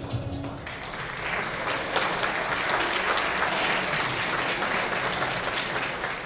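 Audience applauding, swelling up within the first second, holding steady, then thinning out near the end. The tail of a video's music cuts off about half a second in.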